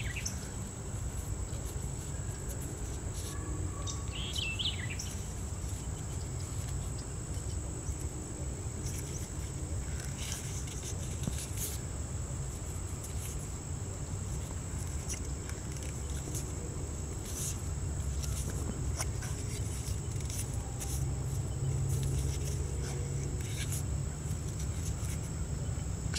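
Outdoor background with a steady high-pitched insect drone and a low hum. Scattered soft crinkles and clicks come from plastic flagging tape being wound tightly around a grafted branch, and a short bird call sounds about four seconds in.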